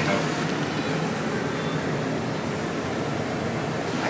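Steady hum and hiss of an air-conditioning unit running.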